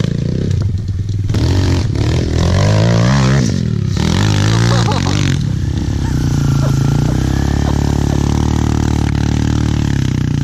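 Big-bore Kawasaki KLX110 pit bike's single-cylinder four-stroke engine revving up and down in hard bursts as it climbs a steep dirt bank, then settling to a steadier, lower note about five and a half seconds in.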